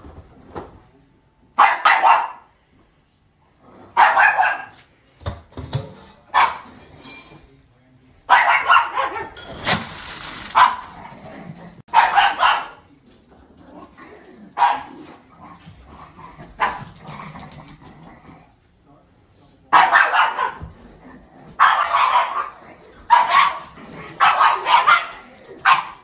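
A dog barking, about a dozen loud, short barks at irregular intervals, some in quick runs of two or three, with a lull a little after the middle. The young dog is barking to rouse an older dog for dinner.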